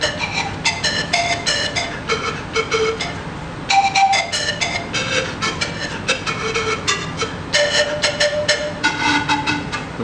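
Bamboo zampoña (Andean panpipe) tuned in D minor playing a melody: quick, breathy, tongued notes one after another, with longer held notes about four and eight seconds in.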